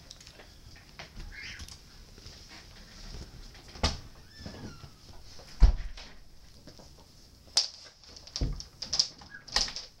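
Handling noise from a handheld camera being moved about: about six scattered knocks and thumps, a couple with a deep low thud, over a faint steady hiss.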